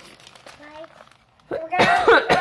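A young child's voice: a faint short sound about half a second in, then a loud high-pitched vocalisation starting about a second and a half in.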